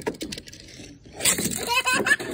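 A toddler's breathy laughter, starting loudly about a second in.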